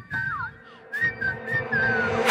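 A whistled melody of short notes, some sliding down in pitch, over a sparse, quiet backing in a hip-hop track.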